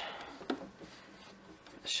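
Soft rustling of polyester stuffing and cotton fabric as a handful of stuffing is pushed into a quilt puff, with a light click about half a second in.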